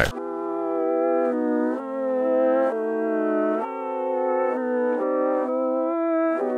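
A reversed piano loop playing slow sustained chords. Each chord swells up in loudness and then cuts off, and the chord changes roughly every second.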